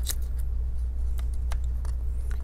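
A few faint, light clicks and taps of fingers handling parts inside an open laptop, over a steady low hum.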